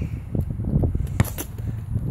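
Low rumble of wind and handling on a phone microphone, with a couple of sharp knocks a little past a second in.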